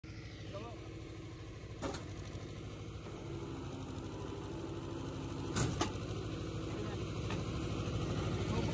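GW-50 rebar bending machine running with a steady hum from its motor and gearbox, slowly getting louder. Sharp clicks come about two seconds in and twice just past halfway.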